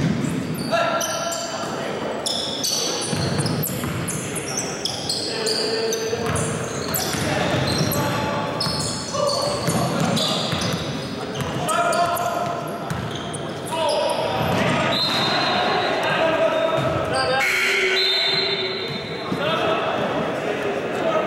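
Indoor pickup basketball in a reverberant gym: a ball dribbling on the hardwood floor, sneakers squeaking in many short, high squeaks, and players calling out.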